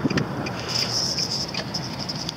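A car driving slowly, with steady engine and road noise. A high, buzzing hiss swells about a second in, along with a few light clicks.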